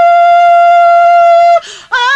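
A woman's singing voice holding one long, high, steady note; it breaks off about a second and a half in for a quick breath, and the next phrase starts with vibrato.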